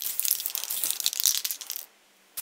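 Aerosol spray-paint can hissing in one continuous burst as paint is sprayed, stopping shortly before the end.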